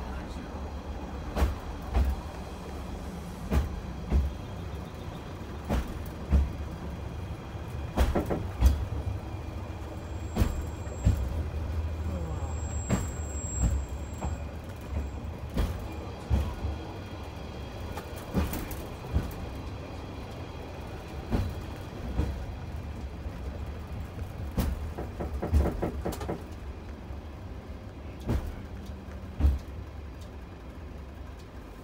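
Asa Kaigan Railway DMV, a bus-based dual-mode vehicle, running on rails in rail mode, heard from inside the cabin: a steady low engine drone with irregular knocks and clatter from the track. About ten to fourteen seconds in, a thin high squeal comes as it brakes on its steel rail wheels.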